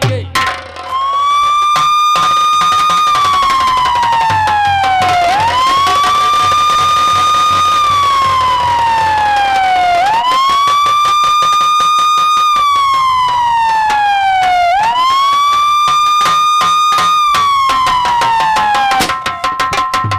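Electronic police-siren sound effect: a wailing tone that climbs quickly, holds, then slides slowly down, four times over, each about five seconds long. It serves as the entry cue for a police officer character.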